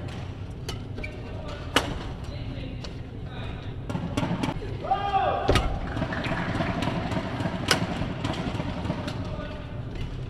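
Badminton rackets striking the shuttlecock with sharp, isolated cracks, the loudest about two seconds in and again near eight seconds in. Hall ambience with scattered voices and a brief squeal about halfway through.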